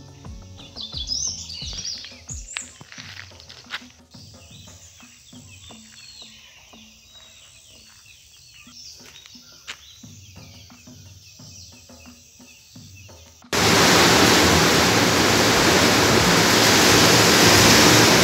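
Birds chirping over quiet outdoor ambience with scattered clicks, then about three-quarters of the way through a sudden cut to a loud, steady rushing noise.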